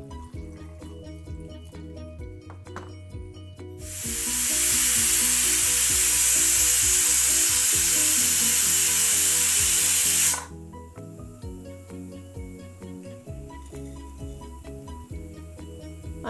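Prestige Deluxe pressure cooker whistling, a sign that it has come up to pressure: steam hisses loudly out under the weight valve for about six seconds, starting about four seconds in and cutting off suddenly.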